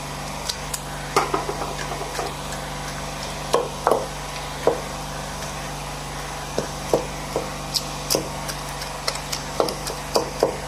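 Pestle pounding boiled, softened garden eggs in a mortar: irregular dull knocks, coming quicker near the end.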